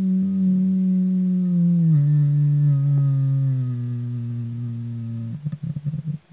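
A person humming a long, steady low note that drops to a lower pitch about two seconds in and is held. Near the end it breaks into short, choppy hums.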